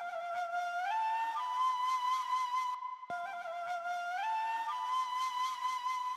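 Solo flute phrase playing back, climbing in steps to a held note; the phrase is looped, cutting off briefly about three seconds in and starting over. The flute's mid-range around 1 kHz is being held down by a dynamic EQ cut so the breathy air stays steady.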